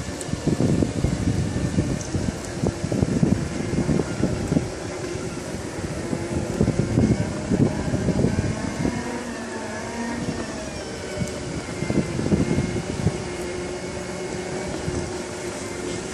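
Segway personal transporters running along a brick path, their electric drives giving a faint whine that shifts slightly in pitch with speed, under irregular gusts of wind rumbling on the microphone.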